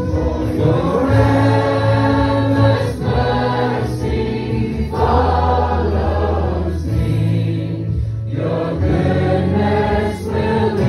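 A congregation of many voices singing a worship song together over a steady instrumental accompaniment with long held low notes, the singing moving in phrases with brief breaks between them.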